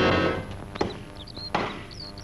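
Background music fades out, then a wooden stake is rammed into the ground by hand: two dull thuds about three-quarters of a second apart.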